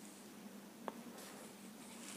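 Faint sound of a felt-tip marker drawing on paper, with a single small click a little under a second in.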